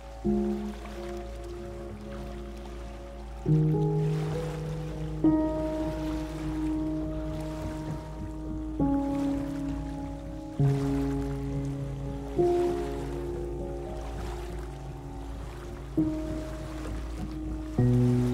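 Slow, soft relaxation music: sustained piano notes and chords, a new one struck about every two seconds, over a steady wash of ocean waves and a low steady hum.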